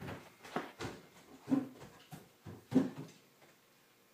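A string of irregular short knocks and bumps, about seven in the first three seconds, then quieter near the end.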